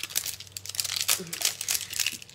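Clear plastic wrapping on a pump hand soap bottle crinkling in quick crackles as fingers pick and pull at it to get it open.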